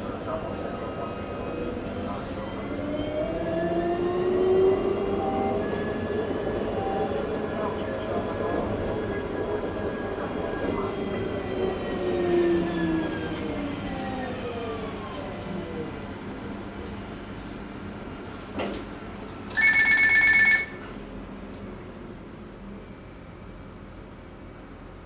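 Light-rail tram running, heard from the driver's cab: the traction motors whine in several tones that rise and then fall as the tram slows into a stop. About four seconds before the end, a loud two-tone electronic chime sounds for about a second.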